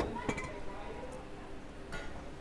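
Enamelware teapot set down on a table with a sharp clink and a brief metallic ring, a second lighter clink just after, and a soft tap near the end.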